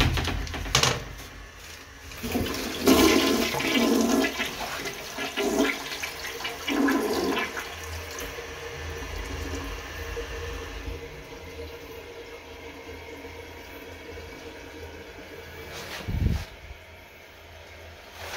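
American Standard tank-type toilet flushing: a few sharp clicks at the start, then a loud rush and gurgle of water for about five seconds, easing into a quieter steady run of water as the bowl and tank refill. A single low thump comes near the end.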